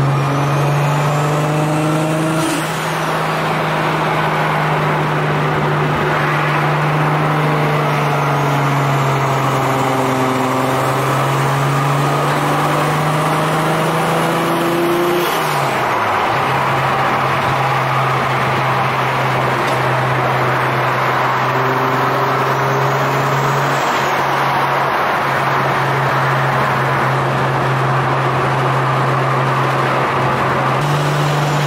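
Toyota MkIV Supra's single-turbo 2JZ-GTE straight-six cruising at highway speed through its 4-inch exhaust, heard inside the cabin as a steady low drone over road noise. About halfway through the engine note dips briefly, then steadies again.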